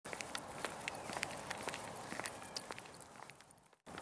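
Faint footsteps of a person and a miniature schnauzer walking on a concrete path, with light, irregular clicks a few times a second, fading away near the end.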